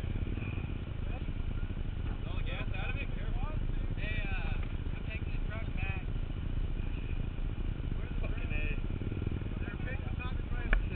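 Indistinct voices of several people talking away from the microphone, over a steady low rumble.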